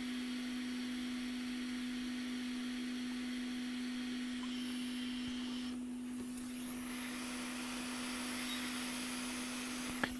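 Hot air rework station blowing with a steady hiss over a steady electrical hum, as it heats the edge bonding around the SMC chip to soften it for removal. The hiss dips briefly about six seconds in.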